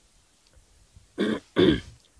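A man clearing his throat twice, two short throaty bursts about a second in.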